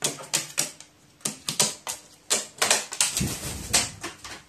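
A crow's beak tapping on a metal-topped table as it pecks up boiled beans: an irregular run of sharp taps. A low rumbling rustle comes near the end.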